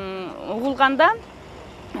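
A woman's voice speaking Kyrgyz in an interview, breaking off about a second in for a short pause.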